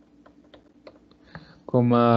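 Faint, irregular light clicks of a digital pen tapping a tablet surface as digits are written, then a man's voice begins speaking near the end.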